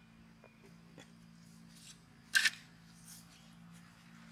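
Quiet garden background with a faint steady hum, broken a little past halfway by one short, sharp scrape from handling potatoes and the digging fork, with a few faint ticks before it.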